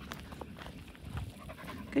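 Portuguese Water Dog panting softly while walking at heel.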